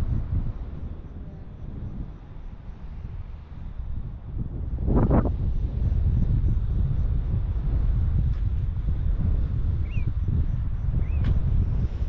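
Wind buffeting the camera's microphone: a steady low rumble that swells and eases, with a short louder burst about five seconds in.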